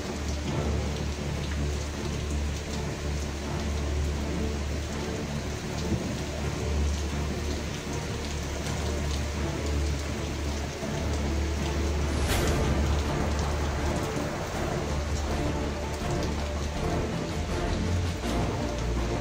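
Heavy storm rain pouring down, with a steady low rumble underneath. A brief sharp crack stands out about twelve seconds in.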